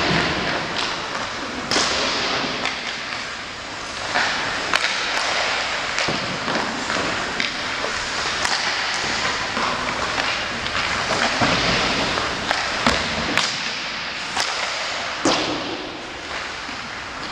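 Ice hockey warmup in an ice arena: irregular sharp cracks of sticks slapping pucks and pucks hitting the boards and glass, over a steady scrape of skates on the ice.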